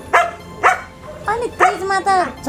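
A dog barking a few times in quick succession, with women's voices.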